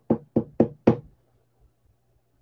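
Knocking on a cardboard box lid: four quick knocks about a quarter second apart, then it stops.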